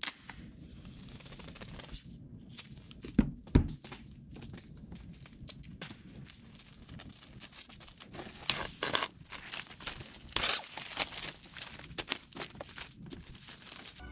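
Thin clear plastic shrink-wrap being torn and peeled off a cardboard laptop box by hand, with crinkling that grows denser and louder in the second half. There are two knocks a little after three seconds in.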